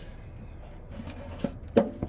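Handling noise as the recording camera is moved and set down: low rubbing, a faint click, then one sharp knock near the end.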